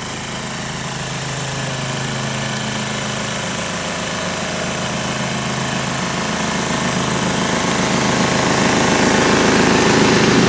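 A small engine running steadily at a constant speed, growing gradually louder.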